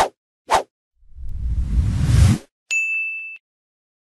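Logo-animation sound effects: two quick swishes, then a whoosh that swells louder and stops abruptly about two and a half seconds in, followed by a single high ding that cuts off after well under a second.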